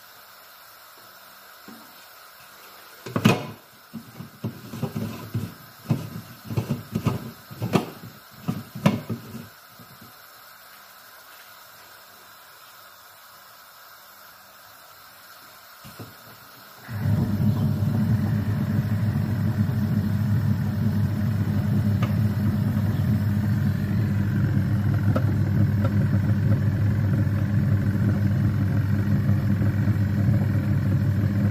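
A run of knocks and clatters as the parts and lid of an electric food processor are fitted. About seventeen seconds in, its motor starts and runs steadily, mixing crumbled paneer with semolina.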